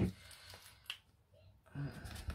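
A single sharp click as a plastic liquid glue bottle is picked up and handled. It is surrounded by quiet.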